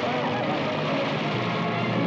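Steady, dense noise of a thatched hut burning, with voices faintly over it.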